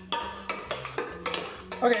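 A metal utensil repeatedly knocking and scraping against a stainless steel pot while mashed potatoes are stirred, about three or four clinks a second.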